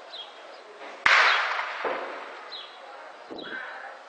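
A distant shell explosion about a second in, a sudden heavy blast whose rumble rolls away over more than a second, followed by two fainter thuds.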